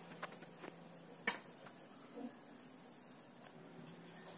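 Quiet scraping and light clicks of a knife against a steel pan and plate as cake glaze is scooped and spread, with one sharper clink about a second in.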